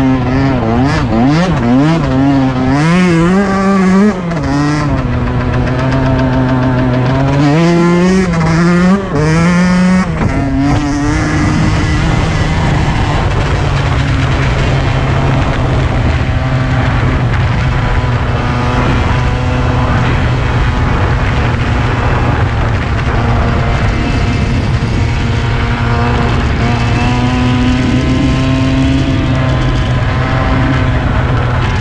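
Yamaha YZ125 two-stroke single-cylinder dirt bike engine revving up and down repeatedly for about the first ten seconds, then running at fairly steady revs for the rest.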